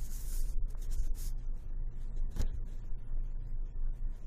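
Two folding AR-15 front backup sights, a Magpul MBUS Pro and a Spikes Tactical micro sight, handled and flipped up in the hands: a brief rubbing sound, a few small clicks, and one sharper click about two and a half seconds in as a sight post snaps up, over a steady low hum.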